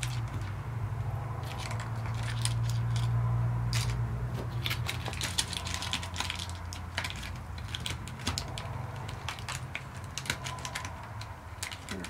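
Small survival-kit items being handled and packed into a plastic water bottle: irregular clicks, taps and light rattles throughout, over a steady low hum that swells a few seconds in.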